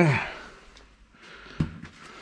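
A short vocal sound at the start, then faint rustling and a soft knock about one and a half seconds in, as a plastic bowl of wood chips is handled beside the stove.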